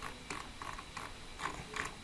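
Computer mouse scroll wheel ticking in about six short, irregular bursts of clicks as a spreadsheet is scrolled.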